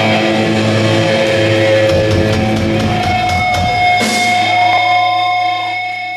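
Hardcore punk band playing live: distorted electric guitars, bass and drum kit. About four seconds in the band hits a final accent, and the last chord is held ringing, beginning to fade near the end.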